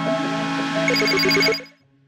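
Electronic outro jingle: synthesizer tones with rising sweeps and, about a second in, a rapid run of short high beeps like a phone ringing. It fades out shortly before the end.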